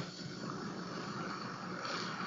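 Faint steady hiss of background room tone, with no distinct events.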